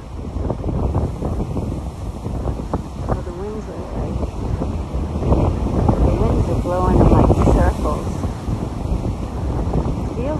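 Strong gusty storm wind buffeting the microphone in uneven surges, with the wash of breaking surf beneath.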